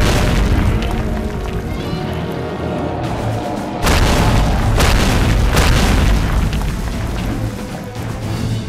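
Cartoon fight sound effects over dramatic background music: a heavy boom right at the start, then another sudden loud rush of noise about four seconds in with a few further hits.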